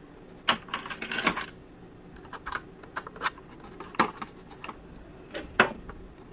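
Irregular small clicks and crackles from hands pressing and bending a thin glued wood skin onto a model hydroplane's sponson, with a dense cluster about a second in and scattered single ticks after.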